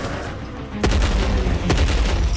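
Two heavy, deep thuds, the first about a second in and the second near the end, over background music: sound-effect footfalls of a giant dinosaur, with a low rumble ringing on after the first.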